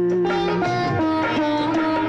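Instrumental passage of a Tamil film song: a melody on a plucked or bowed string instrument steps through short held notes over continuous accompaniment.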